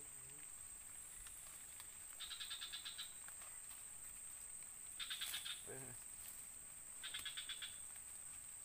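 Faint forest chorus: a steady high-pitched insect drone, with a rapid clicking animal call, each under a second long, repeating three times about two to three seconds apart.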